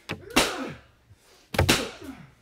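Two sharp lashes of a leather whip, about a second and a quarter apart, each followed by a short cry of pain from the person being beaten.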